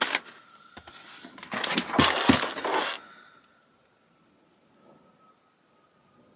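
A large cardboard product box being handled and turned over in the hands: a sharp knock at the start, then about a second and a half of scraping and rustling with several knocks.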